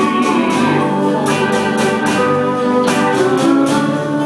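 Live band playing an instrumental passage in a slow 6/8 feel: guitar and bass with held lead notes over drums and steady cymbal strokes, with no singing.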